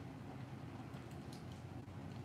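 Quiet room with a steady low hum and a few faint clicks about a second in: small mouth sounds of children sucking on candy lollipops.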